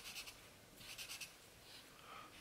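Black felt-tip marker drawing on paper: a few short, faint scratchy strokes, one at the start and another about a second in.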